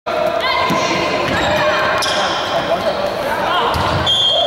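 Basketball game sounds on a wooden gym court: the ball bouncing, short squeaks from sneakers and players calling out, echoing in the hall.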